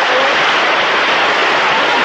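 Concert audience applauding steadily in a theatre.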